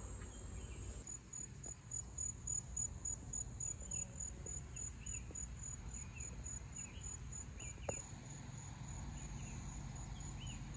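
Insects trilling steadily at a high pitch. A second insect joins about a second in, pulsing about three times a second, and a faster pulsing call starts near the end.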